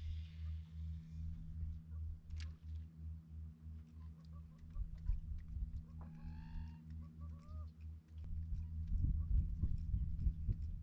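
A single clear pitched animal call, under a second long, about six seconds in, with a fainter short call just after. Under it runs a steady low hum with a regular pulse, and a few faint ticks.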